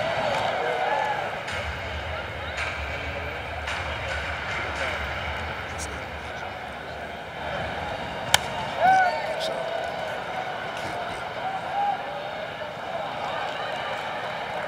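Open-air ballpark background of scattered voices and shouts. About eight seconds in comes a single sharp crack of a bat hitting a softball, followed by a brief call from the field.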